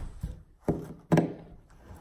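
Two sharp knocks of metal hand tools against a plywood subfloor, about half a second apart.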